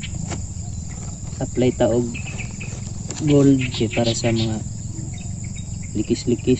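Steady high-pitched chirring of crickets and other insects in a rice field, with brief stretches of a man's voice about one and a half and three seconds in.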